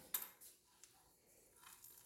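Near silence broken by a few faint metallic clicks and light knocks, the clearest just after the start: a turbocharger and its steel exhaust elbow being handled and held up against the exhaust pipe.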